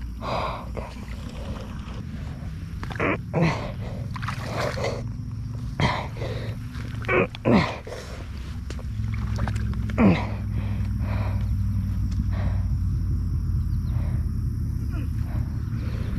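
A pit bike being pushed by hand through shallow swamp water and grass: irregular splashes and sloshing, with a few short strained grunts. A steady low rumble comes in about halfway through.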